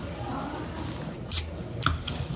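Carbonated soda poured from an aluminium can into a tall plastic cup, a light fizzing hiss. Then two sharp clicks about half a second apart as the pour ends.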